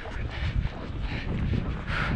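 Wind rumbling on the microphone of a handheld camera, an uneven low rumble.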